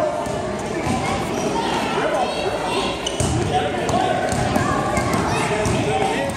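A basketball bouncing on a hardwood gym floor as it is dribbled up the court, with a steady mix of indistinct voices from players and spectators. The sound is echoing in a large gym.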